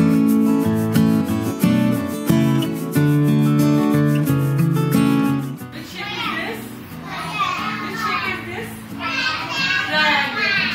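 Instrumental background music, a simple melody of held notes, which cuts off suddenly a little over halfway through. After it, a roomful of young children chattering and calling out.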